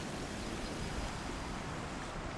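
Steady rush of a shallow mountain stream running over rocks.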